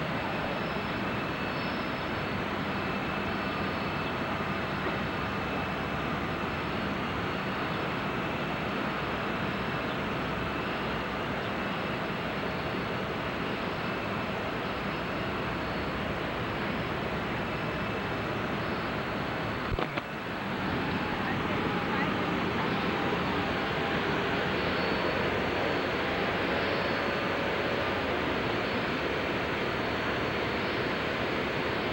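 Steady jet aircraft engine noise, an even rush with a faint high whine over it; it dips briefly about two-thirds of the way through and then comes back a little louder.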